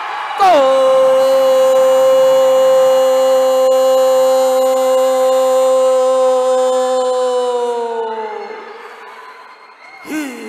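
A male commentator's voice stretching one word into a long held call, steady in pitch for about eight seconds, then sagging and trailing off near the end.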